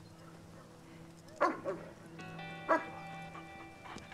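German Shepherd dog barking twice, about a second and a half apart, over a film score of sustained notes.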